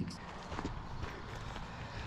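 Soft footsteps on a gravel forest track, a few quiet steps at a walking pace.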